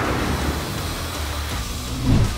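Kia Telluride SUV's V6 engine running as it drives across loose desert sand, under a steady rush of tyre and wind noise.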